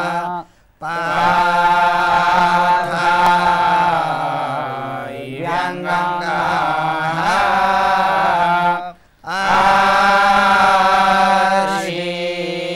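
A group of men's voices chanting Vedic mantras in unison, on long held notes at a steady pitch. The pitch dips and rises again around the middle. Two short pauses for breath break the chant, one just after it begins and one about nine seconds in.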